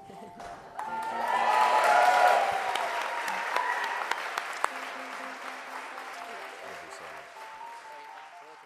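Congregation applauding, with music underneath; the applause swells about a second in and slowly fades away.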